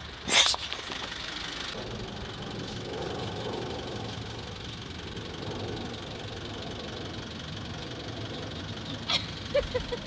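A car engine running steadily at low speed, after a short, loud, sharp noise about half a second in. A few clicks near the end.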